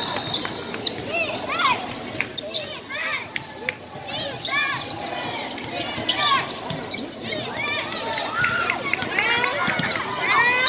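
Basketball game on a hardwood gym court: a ball bouncing on the floor and many short, high sneaker squeaks as players cut and stop, with voices in the hall.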